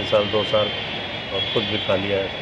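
A man speaking in short phrases, with a pause in the middle. A steady, thin, high-pitched whine runs underneath.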